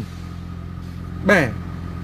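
Steady low hum of an idling engine, with one short spoken syllable about a second and a half in.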